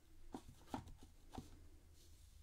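Three faint, short taps of a rubber stamp against an ink pad and card stock, over near-silent room tone.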